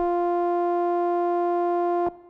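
The closing held synthesizer note of an electronic dance song: a single steady tone with overtones, unchanging in pitch and loudness.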